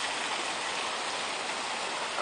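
Water jets of a public fountain splashing, a steady rushing sound.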